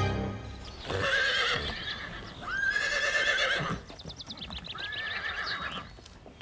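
A horse whinnying three times in a row, the middle call the loudest.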